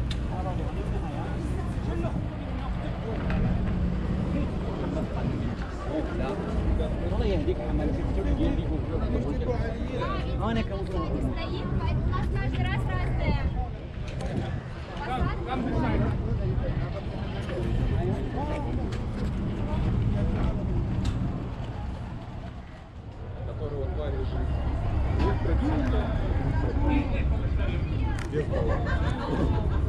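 Chatter of a group of people, with a steady low rumble of an idling boat engine underneath.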